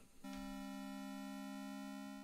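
Modular synthesizer holding a quiet, steady drone of a few fixed tones, which comes in just after a brief gap at the start.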